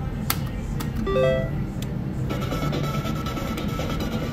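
Top Dollar reel slot machine being spun: a few sharp clicks, a short rising electronic chime about a second in, then steady electronic tones while the reels spin and stop.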